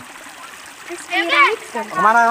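A person's voice calling out briefly about a second in, over faint open-air background noise.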